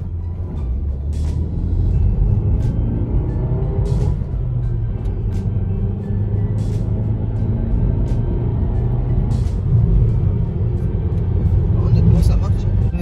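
In-cabin sound of a 2017 Renault Scénic's 115 hp petrol engine and tyre rumble on the move, the engine note rising as it accelerates a couple of seconds in. Music from the car radio plays underneath.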